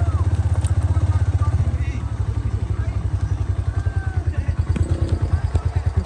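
Motorcycle engine running at low speed while ridden along a rough dirt track, its exhaust a steady, rapid low pulsing.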